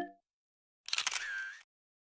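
The last note of a music video's song stops right at the start. After a short gap comes a brief clicking sound with a short wavering tone, about three quarters of a second long, from the music video's closing moments.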